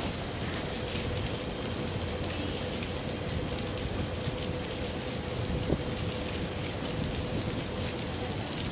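Heavy rain pouring onto a paved city street and footpath, a steady, even hiss, with a faint steady hum underneath.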